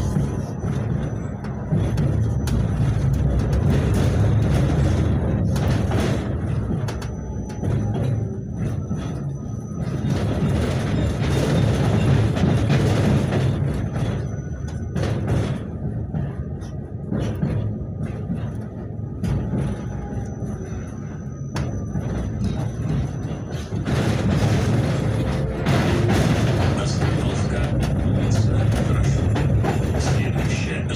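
Low rumble of a KTM-28 (71-628-01) tram running along its track, heard from inside the passenger car, swelling and easing every few seconds. Music plays over the ride noise.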